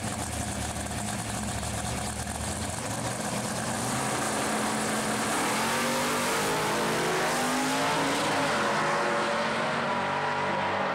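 Two drag-racing cars' engines running on the start line, then a louder launch about four seconds in. The engine note then climbs in pitch again and again as the cars accelerate away down the strip.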